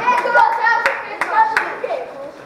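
A few people clapping, the claps scattered and uneven, with voices calling out over them.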